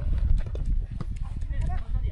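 Soccer scrimmage on artificial turf: players' scattered shouts and calls, with short thuds of running feet and kicked ball, over a steady low rumble.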